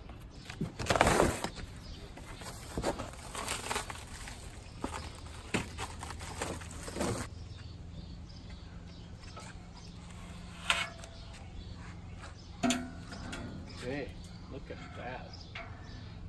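Cardboard packaging and plastic wrap being torn and rustled off aluminum sheets. There are irregular rips and crinkles over the first seven seconds, the loudest about a second in. Later come a couple of single knocks as the sheets are handled.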